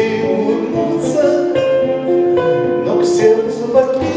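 A man singing a slow Russian bard song to his own acoustic guitar, with plucked chords and notes under the voice.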